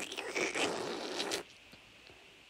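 A rasping, scraping noise for about a second and a half, then it cuts off.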